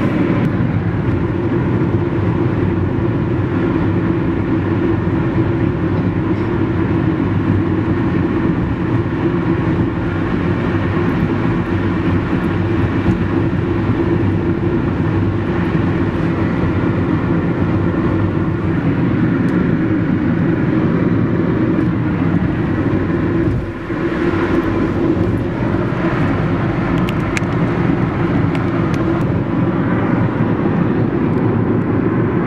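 A car driving at highway speed, heard from inside the cabin: steady low road and engine rumble, dipping briefly about three-quarters of the way through.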